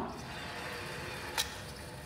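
Dynamics cart rolling along a metal track with a steady rolling noise, then a single sharp knock about one and a half seconds in as it strikes a second cart and the two stick together on Velcro.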